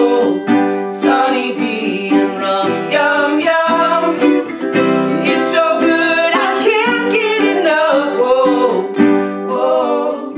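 A man and a woman singing together over a strummed ukulele and a strummed acoustic guitar.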